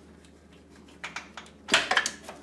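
Light clicks, then a short, sharper clatter near the end, as spark plug wires are handled and set aside in the engine bay of an air-cooled VW Beetle.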